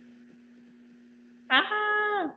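A low steady hum, then about one and a half seconds in a short held note at a steady pitch that falls away at its end, in a child's voice.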